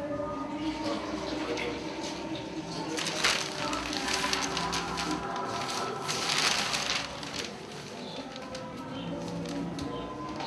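Music playing in the background, with a newspaper's pages rustling loudly twice as they are turned and folded: once about three seconds in, then again for about a second midway.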